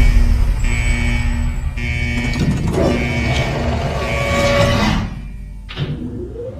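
Logo-intro music with a heavy, deep low rumble under held tones and a few sharp hits, dropping away about five seconds in.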